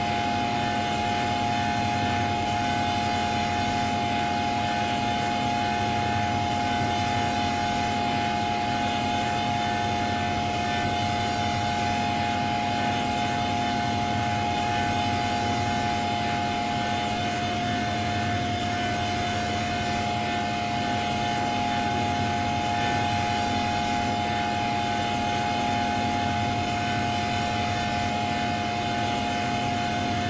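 Electronic drone of several held tones sounding together, steady and unbroken, with one upper tone briefly dropping out a little past halfway; a Windows system sound stretched and distorted through a 'G Major' effects chain.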